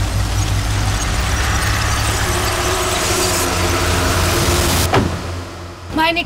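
A car engine running steadily; the sound cuts off with a sharp click about five seconds in.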